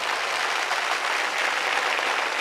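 Audience applauding: many hands clapping steadily, a dense even patter.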